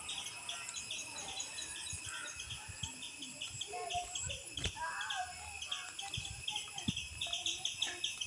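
A chorus of insects chirping, high-pitched, in rapid steady pulses, with scattered mid-pitched bird calls and a few soft low thumps.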